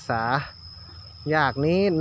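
A man speaking Thai, with a steady, unbroken high-pitched insect drone underneath.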